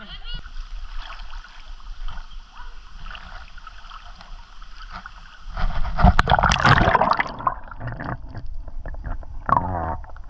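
Water splashing and sloshing against a handheld action camera as it dips into a shallow river, loudest in a burst from about halfway through, then gurgling once the camera is under the surface.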